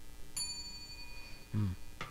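A single bell ding struck about a third of a second in, its ringing tone dying away over about a second, marking the correct quiz answer.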